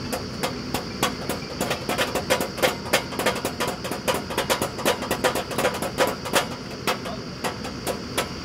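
Borewell drilling rig running: a steady engine drone with a high whine, overlaid by rapid, irregular metallic clicks and knocks at the drill head, several a second and thickest in the middle.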